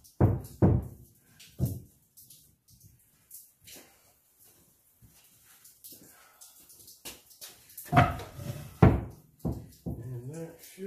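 Wooden 2x4 boards knocked and set down onto a stack of boards on a wooden workbench. A few sharp wooden knocks come in the first two seconds, then a quiet stretch, then three louder knocks near the end.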